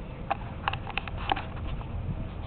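Gas from an HHO electrolysis cell bubbling through water, heard as irregular small pops and gurgles several times a second.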